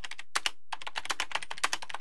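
Computer keyboard typing sound effect: a rapid run of key clicks, with a brief pause about half a second in, stopping abruptly.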